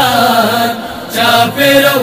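A man's solo voice chanting a Pashto noha, a Shia mourning lament, in long drawn-out phrases, with a brief pause near the middle.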